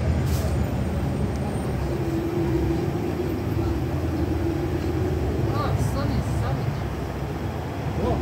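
Electric multiple-unit train standing at the platform, running with a steady low hum. A higher held tone comes in for a few seconds in the middle.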